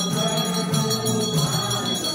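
A crowd of worshippers singing a Hindu devotional song together in a steady group chorus, with hand clapping.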